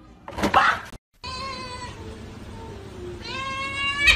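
A loud, short burst of noise in the first second. Then a domestic cat gives two long, drawn-out meows, the second rising slightly in pitch.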